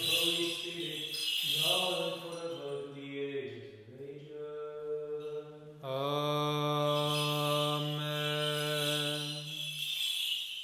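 A man chanting Orthodox liturgical plainchant. His pitch moves about for the first few seconds, then he holds a single steady note for about four seconds.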